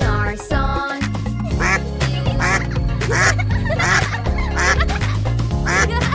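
Repeated cartoon duck quacks, a little less than one a second, over a bouncy children's music backing track.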